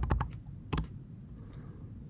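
Computer keyboard keystrokes: a few quick key presses at the start, then a single press a little under a second in, as a number is typed into a spreadsheet cell and entered.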